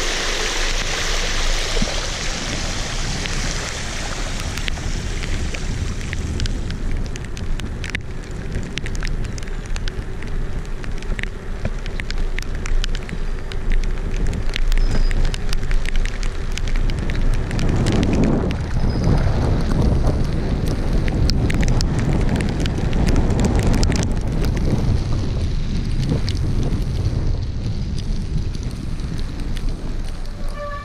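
Riding a 29-inch mountain bike with wind buffeting a handlebar-mounted action camera's microphone, over a steady rush of tyre and ride noise with scattered clicks and rattles. At the start the wheels hiss through shallow floodwater, and that fades within the first few seconds.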